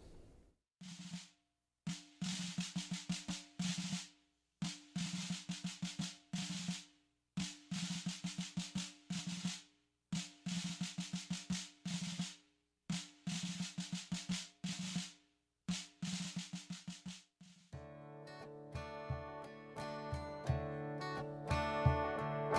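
Snare drum playing a military marching cadence in repeated phrases of rapid strokes separated by short pauses. Near the end the drumming gives way to acoustic guitar and sustained instrumental chords, which grow louder.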